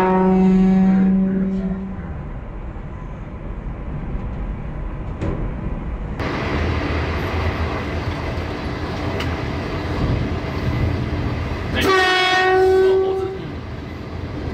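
TEMU2000 Puyuma tilting train's horn giving warning blasts at a monkey crossing the track: a long blast that ends about two seconds in, and a second of about a second and a half near the end. In between is the train's running noise on the rails, which grows louder from about six seconds in.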